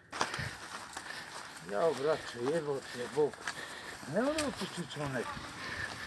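A voice speaking two short stretches of words, quieter than the nearby talk, over a steady outdoor hiss with a few sharp handling clicks.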